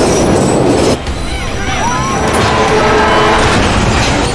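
Over-speeding passenger train running at high speed on the rails, with a loud, continuous rumble of steel wheels on track and high-pitched wheel squeal.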